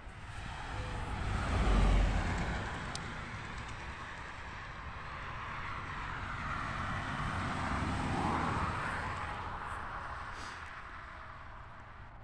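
Cars passing on a road, their noise swelling to a peak about two seconds in, easing off, then swelling again around eight seconds before fading away.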